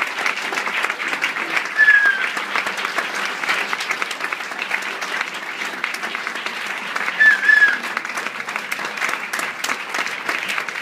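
Audience applauding steadily after a song, with a couple of brief high calls from the crowd, about two seconds in and again near the end.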